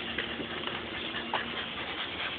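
Shiba Inu at play, nosing among balls on loose stones: small scattered clicks and scrapes, over a steady low hum.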